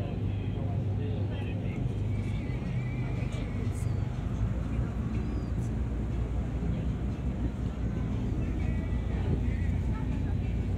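Passenger ferry's engine running steadily: a low, even hum with a few constant low tones underneath.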